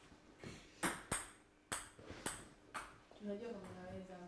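Faint sharp clicks, five or so spread over about two seconds, each with a brief high ring, then a short low murmur near the end.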